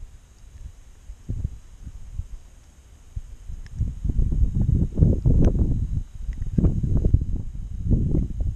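Low, irregular rustling and rumbling close on the microphone from jacket sleeves and hands moving right by it, heavier in the second half, with a few faint clicks.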